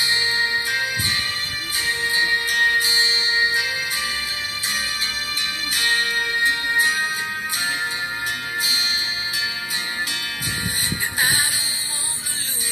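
Music played through a horn compression-driver tweeter wired through a 4.7 µF series capacitor: thin and treble-heavy, because the capacitor blocks the low frequencies and passes only the highs to the tweeter.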